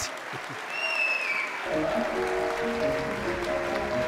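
Audience applauding, with a short high falling whistle about a second in. Music with sustained notes comes in under the applause a little under halfway through.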